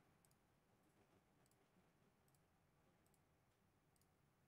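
Near silence: room tone with a few very faint, short high clicks.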